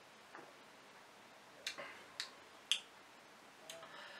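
Three faint, sharp mouth clicks about half a second apart: lip smacks and tongue clicks of a taster working a mouthful of beer.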